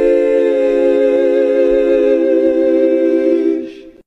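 A 'heavenly sheesh' meme voice effect: a drawn-out 'sheesh' vowel layered into a held choir-like chord of several voices, which fades out in the last half-second.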